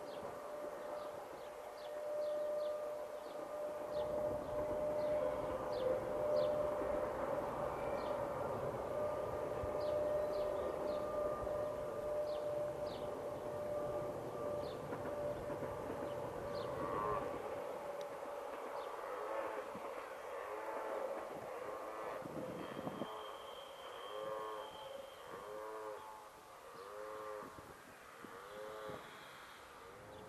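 Rhaetian Railway electric train running past, its locomotive giving a steady whine over a low rumble from the wheels; the sound fades after about 17 seconds. In the last ten seconds a string of short rising-and-falling tones comes about once a second.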